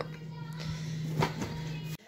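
Steady low hum of an open fridge-freezer running, with a couple of faint knocks near the middle.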